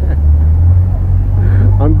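Low, steady rumble of city street traffic, with a man laughing briefly near the end.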